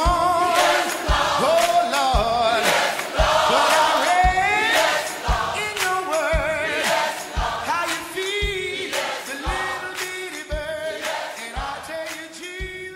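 Southern gospel choir singing with band accompaniment, a bass drum keeping a steady beat about once a second. The music grows quieter in the last few seconds as the song ends.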